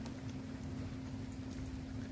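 Faint background sound: a steady low hum over a soft even hiss, with a few faint ticks.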